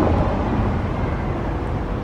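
Steady city street noise, mostly a low rumble without distinct events.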